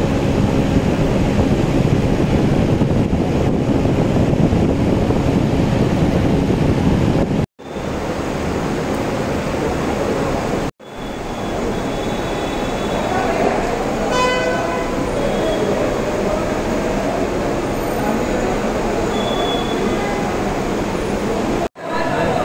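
Loud, steady outdoor bustle of traffic and crowd voices. It cuts out abruptly twice, and a short horn blast sounds a little past halfway.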